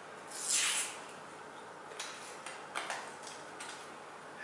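A paper-wrapped can of pizza dough being handled: a brief soft swish, then a few light clicks as it is turned and fingered.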